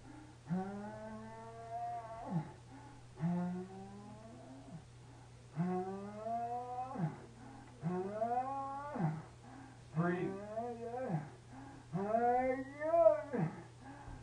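A wounded man with a gunshot wound moaning in pain. About six long, drawn-out cries come a couple of seconds apart; each rises in pitch and breaks off, and the last ones are the loudest.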